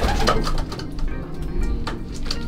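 Racing pigeons cooing inside their loft, with background music.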